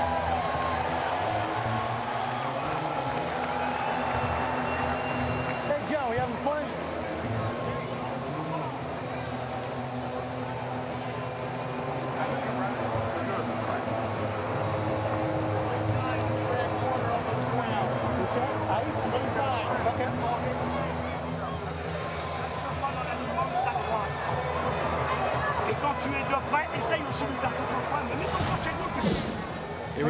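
Boxing arena ambience: crowd hubbub with music over the PA and indistinct voices, and a few sharp clicks near the end.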